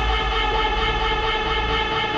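Techno track from a DJ mix in a breakdown: a sustained, held synth chord over deep bass, with no kick drum beating.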